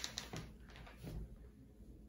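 Faint rustling and handling of a necktie drawn around a shirt collar, with a few soft clicks near the start and a dull thump about a second in, over quiet room tone.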